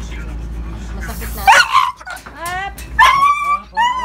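A Labrador-cross dog whining and yelping in repeated high cries that slide up and down in pitch, starting about a second and a half in, while it is restrained and fitted with a plastic basket muzzle.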